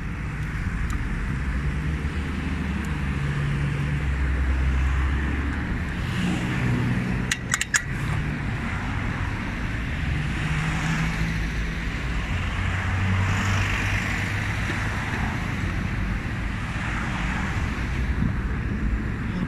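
Road traffic: cars driving past, a low engine hum that swells and fades with tyre noise over it. A brief cluster of sharp clicks comes a little before halfway through.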